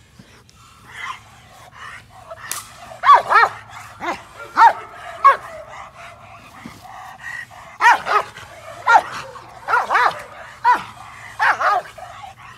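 A bandog barking again and again, about a dozen sharp barks in clusters of two or three starting about three seconds in, while on leash and lunging at a decoy during bite-work training.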